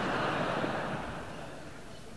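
Concert audience laughing: a brief wash of crowd sound that swells at once and dies away by about halfway.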